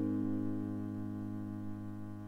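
Instrumental backing-track intro: a single piano chord held and slowly fading.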